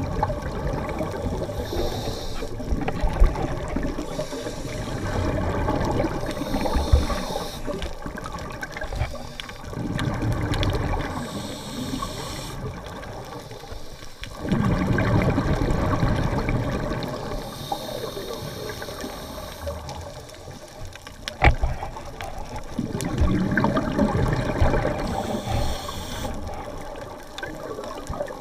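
Scuba breathing heard underwater: a hiss from the regulator on each inhale alternates with a gurgling rush of exhaled bubbles, about every five to six seconds.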